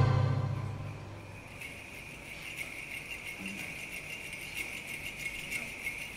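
Choir and orchestra cut off on a loud chord that dies away over about a second, then sleigh bells shaken softly and steadily.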